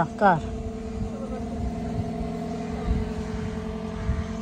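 A car engine idling, a steady even hum. A man's word is heard at the start.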